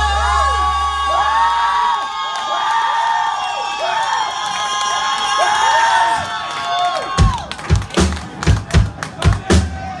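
A live rock band's held chord dies away under the singer's sliding, wailing vocal runs and crowd cheering. About seven seconds in, a steady rhythm of sharp claps and deep thumps starts, about two or three a second, as the band drops out.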